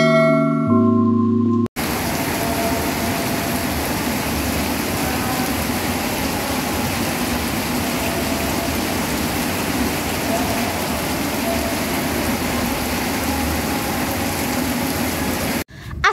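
A short mallet-percussion jingle ends under two seconds in. It cuts to heavy rain pouring steadily onto corrugated sheet roofs, which runs until a cut just before the end.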